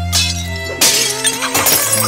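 Cartoon background music broken by a loud shattering crash, like breaking glass or crockery, about a second in, with a few more sharp hits after it.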